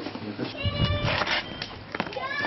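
A cat meowing: a high, drawn-out cry starting about half a second in, broken into a few calls.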